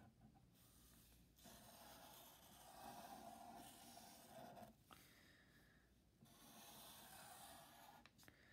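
Near silence with the faint scratch of a felt-tip Sharpie marker drawing lines on newspaper. It comes in two long strokes, the first ending a little before the middle and the second starting about six seconds in.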